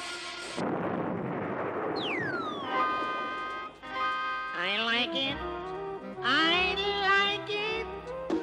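Cartoon magic-spell sound effects with music: a rushing hiss for about two seconds, then a falling whistle. After that come held musical notes and, from about halfway, tones that slide and waver in pitch.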